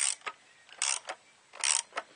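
Ratchet wrench on a 32 mm socket being worked back and forth to hand-tighten the oil filter housing cap of a 1.9 TDI diesel engine. Three short bursts of ratchet clicking come at an even pace, about one stroke a second.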